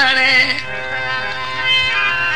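Old Saraiki folk song: the singer's long held note, wavering slightly, ends about half a second in, and the accompaniment carries on with steady sustained notes.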